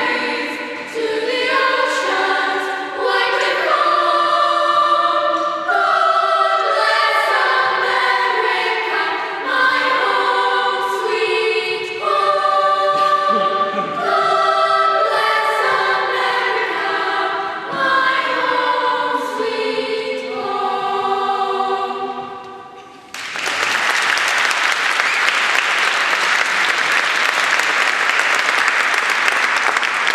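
Middle-school choir singing; the song ends about three-quarters of the way through, and the audience applauds for the rest.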